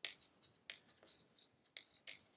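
Faint chalk writing on a chalkboard: three sharp taps as strokes begin, with light scratching in between.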